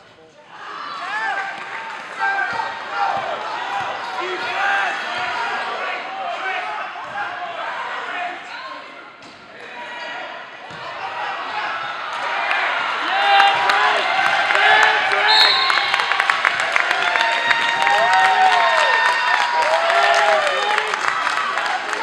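Many voices shouting in a gym during a basketball game, with a basketball bouncing on the hardwood floor. The noise grows louder about halfway through.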